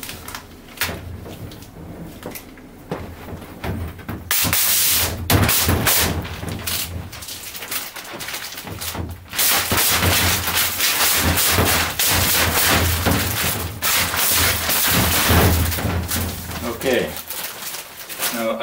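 Protective plastic film being peeled off a large acrylic (plexiglass) sheet: a crackling, ripping noise in long pulls, louder from about four seconds in, with crinkling of the loose film.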